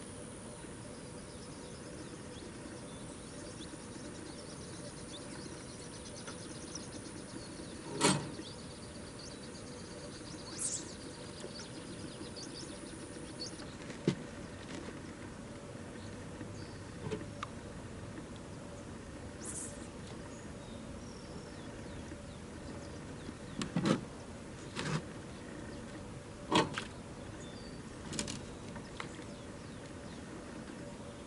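Quiet lakeside ambience with a steady high insect buzz and fine ticking that stop about halfway through. Over it come scattered sharp clicks and knocks from fishing poles being handled on their rest, the loudest about eight seconds in and several close together near the end.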